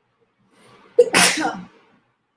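A woman sneezing once: a soft breath in, then a sudden loud sneeze about a second in that dies away within about half a second.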